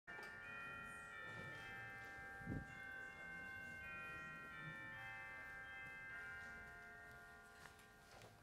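Bells chiming: many high, sustained ringing tones entering one after another and overlapping, then fading away over the last couple of seconds. A single soft thump falls about two and a half seconds in.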